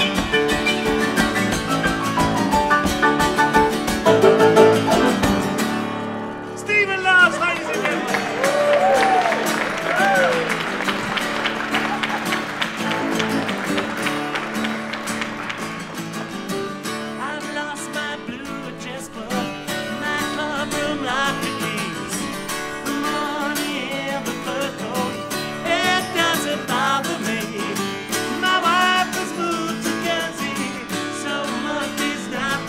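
Live acoustic performance of a song: two steel-string acoustic guitars strumming, with grand piano accompaniment and a male voice singing.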